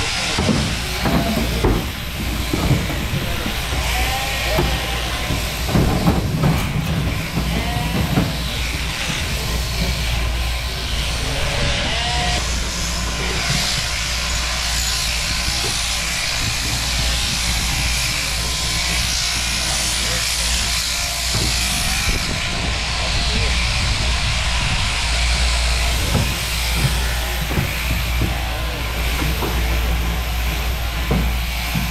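Electric sheep-shearing handpiece, driven by an overhead shearing machine through a drop tube, running steadily with a constant hum while its comb and cutter shear through a sheep's fleece.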